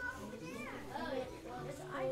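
Children's voices talking quietly among themselves, with music starting up near the end.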